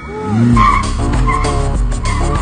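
Car tyres squealing in a long, wavering skid over music, whose heavy bass beat kicks in about half a second in.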